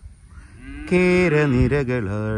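A cow mooing: one long call that grows loud about a second in and drops in pitch as it goes on.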